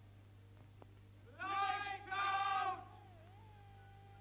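Two long, high-pitched vocal calls, each about half a second, close together; a thin wavering tone begins just before the end.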